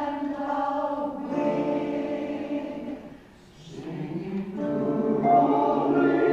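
Large mixed choir of women's and men's voices singing in held chords. The voices break off briefly a little past the halfway point, then come back in and swell louder.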